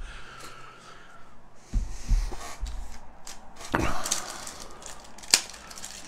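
A trading-card pack wrapper being handled and torn open, crinkling and crackling, with a couple of soft knocks about two seconds in and sharp crackles near the end.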